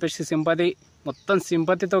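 A man speaking Telugu in short phrases, with a brief pause about a second in.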